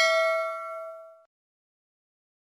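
Bell 'ding' sound effect for a clicked notification-bell icon, ringing as a clear tone with bright overtones and fading out about a second in.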